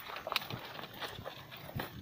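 Soft, irregular crackling and rustling of dry straw mulch and stiff pineapple leaves as someone moves through a pineapple planting.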